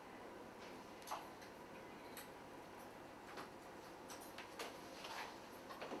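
Faint, scattered small clicks and rustles of hair being twisted and handled at close range, about one click a second.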